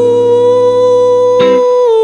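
A man's voice singing one long held note into a microphone over a low sustained chord. The chord drops out about one and a half seconds in, and the sung note steps down in pitch near the end.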